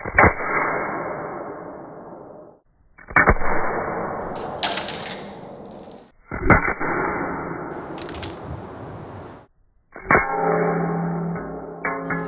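An Apple Card slammed onto a granite countertop four times, about three seconds apart. Each slam is a sharp crack followed by a long, fading rumble, exaggerated far beyond what a card could make.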